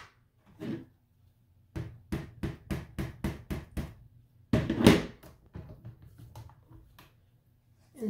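Stamping tools being handled on a craft mat. A quick string of light clicks is followed by a louder knock about five seconds in, then faint ticks. The knock fits the clear plate of a stamp-positioning tool being swung down onto the card.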